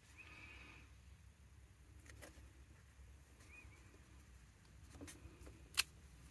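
Near silence with faint handling sounds from a clear acrylic stamp block pressed onto card stock: a few soft clicks, with a sharper click near the end as the block is lifted away.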